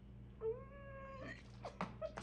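A woman's short, high cry of delight, rising and then held for under a second, followed by faint rustling and a couple of light taps.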